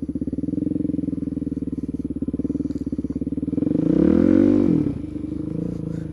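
Suzuki DR-Z400SM's single-cylinder four-stroke engine running at low revs with a fast, even pulse. About three and a half seconds in it revs up and falls back within a second or so, the loudest moment, then settles to low revs again.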